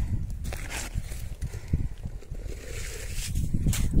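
Low, uneven rumble of wind on the microphone, with a few soft rustles and clicks as gloved hands knead a small lump of groundbait.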